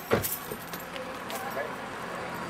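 A single heavy thump just after the start, followed by a few light metallic clicks and faint voices.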